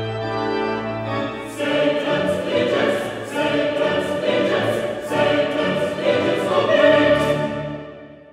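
A pipe organ holds a steady chord, then about one and a half seconds in a mixed choir comes in singing, its crisp sibilant consonants landing at regular intervals. The music fades out near the end.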